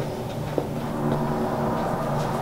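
A low, steady hum, with a single sharp click about half a second in.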